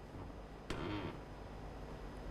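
A quiet pause in the conversation: low room tone and hum, with a short hesitant vocal sound from a person about three-quarters of a second in.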